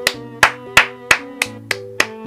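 A person clapping hands six times in an even rhythm, about three claps a second, over background music with sustained notes.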